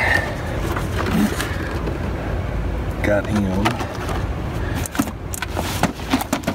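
A steady low rumble of room noise with brief background voices twice, and a few sharp clicks near the end from a cardboard toy box being handled.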